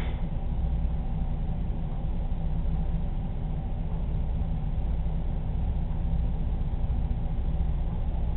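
A steady low rumble with a faint hum above it and no distinct events.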